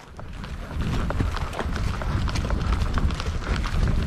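Hoofbeats of a ridden horse moving over dry, grassy ground: an irregular run of short clicks and thuds over a continual low rumble, growing louder about a second in.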